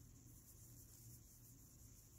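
Near silence: room tone with a faint low hum and a faint steady high-pitched hiss.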